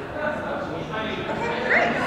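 Indistinct chatter of many people talking at once in a large hall, with a short high rising cry near the end.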